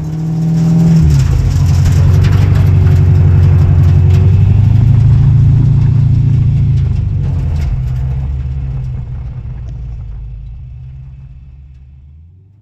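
Supercharged 6.2-litre Hellcat V8 of a custom 1968 Dodge Power Wagon running hard as the truck drives by. Its note steps down about a second in, holds loud and steady for several seconds, then fades away.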